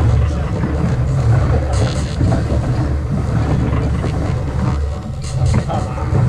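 Steady low rumble with a few light clicks and knocks, around two seconds in and again near five seconds, and faint voices behind.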